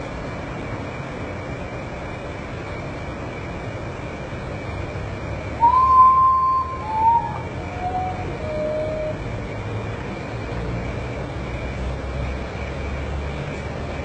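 Common potoo singing its mournful song: four whistled notes stepping down in pitch, the first long and the loudest, the later ones shorter and fainter, about halfway through. A steady low background rumble runs under it.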